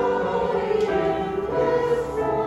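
Slow, sustained music played on the keyboard, moving through long held chords.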